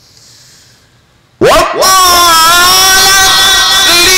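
Melodic Quran recitation by a male reciter, amplified through a microphone: after about a second and a half of quiet, his voice comes in loud with a rising glide into a long held note.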